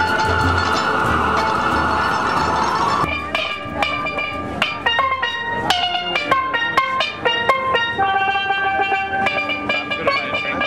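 For about the first three seconds a single long note is held over a noisy wash of music; then it cuts sharply to a steelpan played by hand, a quick melody of separate struck notes, each ringing briefly before the next.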